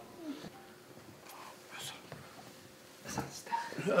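Quiet indoor room tone with a few faint, brief voice sounds. Talking starts again near the end.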